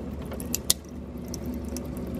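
Water dispenser inside a refrigerator running, a steady low hum as a stream of water pours into a plastic cup, with a few sharp ticks.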